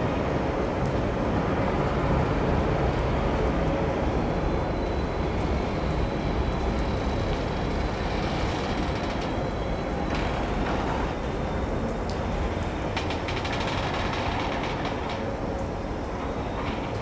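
Intermodal freight wagons loaded with swap bodies and semi-trailers rolling slowly past: a steady rumble of steel wheels on the rails, with light clicks in the second half.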